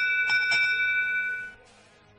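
Electronic bell-like signal tone of the competition's field control system, marking the end of the autonomous period as the match clock hits zero. It holds steady for about a second and a half, its higher tones dropping out first, then cuts off.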